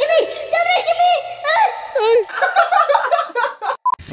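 A high-pitched, chipmunk-like sped-up voice giggling and chattering, an edited-in comic sound effect. It ends near the end with a brief steady beep and cuts off suddenly.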